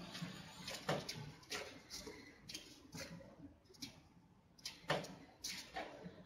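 Faint, irregular soft rustles and light knocks, about one or two a second, from hand and clothing movement near the microphone in a small room.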